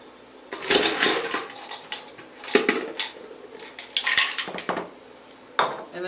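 Ice cubes clinking as they are dropped into a cocktail glass, in four separate clattering bursts about a second and a half apart.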